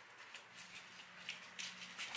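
Faint, intermittent rustling and scratching of paper pumpkin-carving stencils being handled and worked with a small carving tool.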